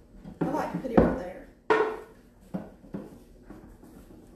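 Objects being handled and set down on a hard surface: a few knocks and clatters, the loudest about a second in, a second sharp one just under two seconds in, then a couple of lighter taps.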